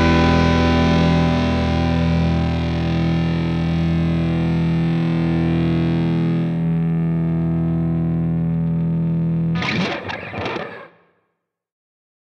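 Closing chord of a rock jam on distorted electric guitars, bass and keyboard strings, held and slowly dying away. About nine and a half seconds in, the chord breaks off into a short rough flurry of distorted guitar that stops a second or so later.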